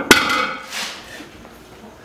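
Loaded barbell with bumper plates set down on the floor at the end of a deadlift: one sharp clank that rings briefly, with a softer second noise just under a second in.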